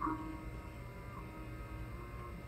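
Low steady hum in a quiet pause, with a brief faint tone right at the start.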